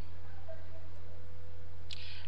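Steady low electrical hum in the recording, with a faint thin steady tone above it and no other event.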